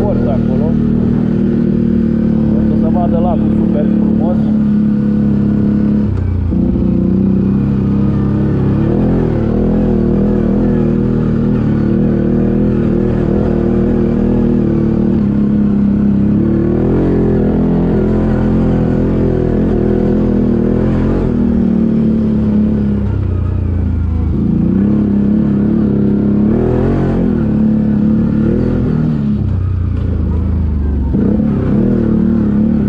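ATV engine running under load on a rough dirt trail, its note rising and falling several times as the throttle is opened and eased off.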